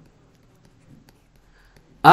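Faint scratching and light taps of a stylus writing handwritten text.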